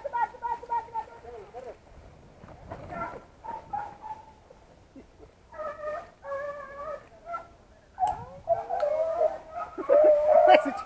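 Beagles giving tongue on a rabbit's trail: short, repeated high-pitched yelps in several bouts with pauses between.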